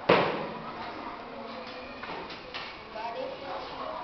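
A single loud thump at the very start that rings out over about half a second, followed by low voices.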